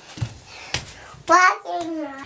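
Bare feet of a toddler slapping lightly on a luxury vinyl tile floor, two soft steps in the first second. After that, about two-thirds of the way in, comes a young child's high-pitched vocal sound.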